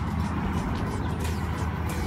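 A steady low rumble.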